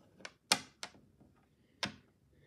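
Gaming dice clicking on a wooden tabletop: four sharp, separate clicks at uneven intervals as the dice are rolled and handled.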